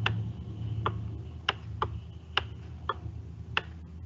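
Computer mouse button clicking about seven times at an irregular pace as strokes are drawn in a paint program, over a steady low electrical hum.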